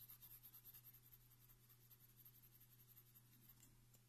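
Faint scratching of a coloured pencil on drawing paper, quick short shading strokes about six a second that ease off after about two seconds.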